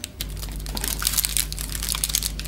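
Baking paper crinkling and rustling, with many small crackles, as a brownie is broken apart and handled on it; a steady low hum comes in just after the start.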